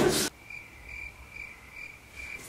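Cricket chirping at a steady rate of about three to four chirps a second, the stock 'crickets' effect for an awkward, empty silence. A snatch of music cuts off abruptly just after the start.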